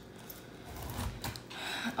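Kitchen knife slicing through a whole pineapple, rind and flesh, on a plastic cutting board: a few soft cutting sounds bunched around the middle.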